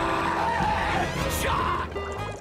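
Heavily distorted shouting over music, with a hissy burst about a second and a half in that drops into a wavering tone.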